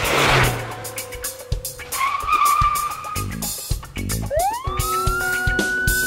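Podcast intro music with a drumbeat, layered with car sound effects. There is a burst of noise at the start, a wavering squeal about two seconds in, and a rising wail from about four seconds in that levels off and holds.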